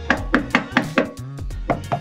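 A hand tapping rapidly on a Unimog cab panel lined with Car Builders sound deadener, about five knocks a second, to show how well the treated panel is damped.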